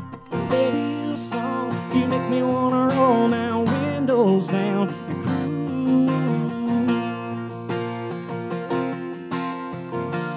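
Acoustic guitar strummed in a steady rhythm, playing a live country song.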